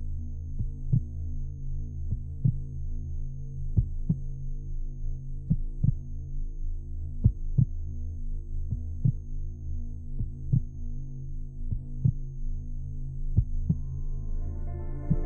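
Slow heartbeat, a paired lub-dub thump about every second and a half, over a low steady drone.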